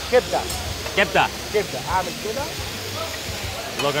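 Chopped liver frying on a flat steel griddle, a steady sizzling hiss under voices talking.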